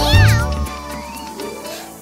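A cartoon cat's meow, a single falling call right at the start, over children's song music that fades down toward the end.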